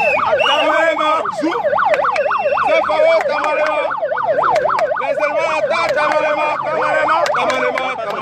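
A siren yelping in rapid up-and-down sweeps, about three a second, over the voices of a marching crowd.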